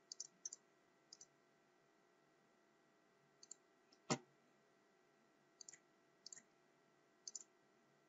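Faint computer mouse button clicks, scattered singly and in quick pairs, with one sharper, louder click about four seconds in.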